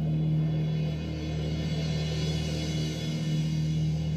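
Orchestra music: a held low chord, with a shimmering high swell that builds and fades in the middle.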